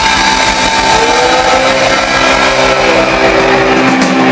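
Live band holding a loud, sustained distorted chord on electric guitars, with one note bending upward about a second in.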